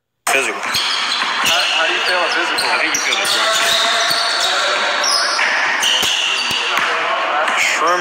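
Basketball bouncing on a hardwood gym floor, irregular sharp knocks, over indistinct shouting and chatter of players echoing in a large gym.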